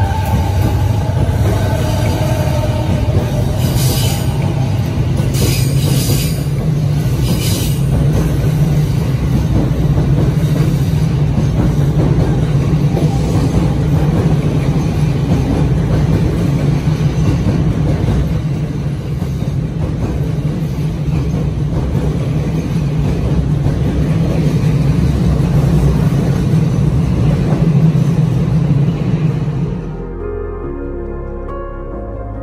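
Yokosuka–Sobu Line electric commuter train running past along the platform, a steady loud rumble of wheels and running gear, with a few brief high hisses about four to eight seconds in.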